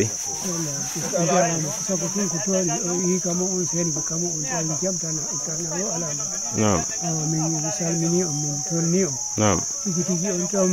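A man talking steadily over a constant high-pitched insect drone.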